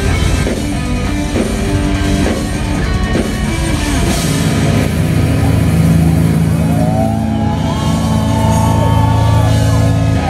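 Melodic death metal band playing live through a stage PA: distorted electric guitars and drum kit, with busy drumming for the first four seconds, then held heavy chords and a high melodic line gliding over them near the end.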